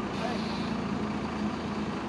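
A heavy vehicle's engine running steadily, a low even drone holding one pitch.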